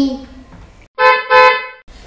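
A car horn honks twice in quick succession about a second in: two short steady beeps, the second a little longer. It is a warning to pedestrians stepping into the road.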